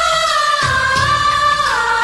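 A Bollywood film song playing: a long held melody note with a full set of overtones, stepping down in pitch twice, over bass.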